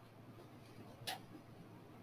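Near silence broken by a single short click about a second in, a computer mouse button being pressed.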